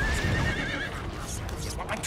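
Deep, continuous rumbling of an erupting volcano. Over it in the first second is a high, wavering cry, and near the end come a few sharp crashes.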